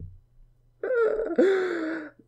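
A man's pained groan in two drawn-out parts, starting about a second in, the second part lower in pitch. It is a reaction to his burning, watering eyes.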